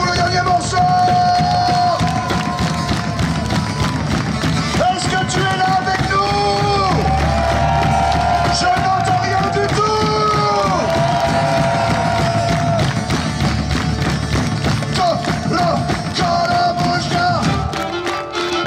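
Live folk-rock music from a medieval-style band with drums and a plucked string instrument, the audience clapping and singing along in long held notes.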